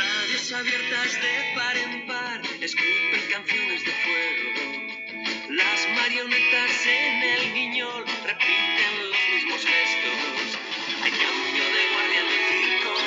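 A recorded song with guitar accompaniment, played back from a mobile phone held up to a microphone.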